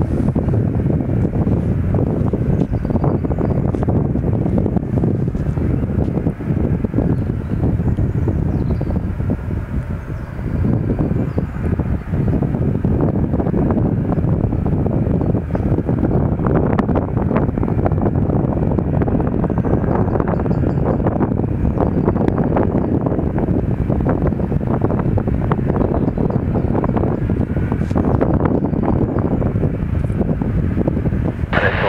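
Wind buffeting the microphone, a steady rough low rumble with gusty streaks, with the low running noise of a taxiing Boeing 737's jet engines beneath it.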